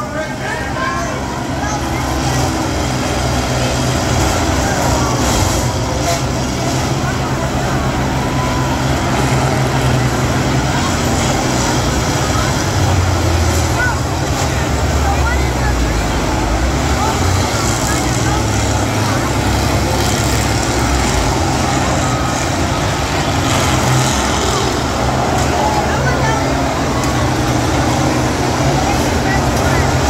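Diesel engines of several large combines running and revving as they ram each other in a demolition derby, a heavy low rumble that swells and eases, with crowd voices throughout.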